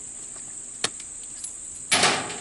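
Steady chirring of crickets. A single sharp metallic click comes just under a second in, and a loud clatter comes right at the end as the 1917 Smith & Wesson revolver is opened and its moon clip of spent .45 ACP cases is ejected.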